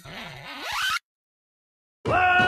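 Electronic build-up in a trap remix: the beat drops out and a noisy sweep rises in pitch and loudness for about a second, then cuts off suddenly into complete silence for about a second, a break before the drop.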